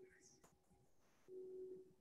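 Near silence: room tone, with a faint steady low tone that fades out just after the start and comes back for about half a second near the end.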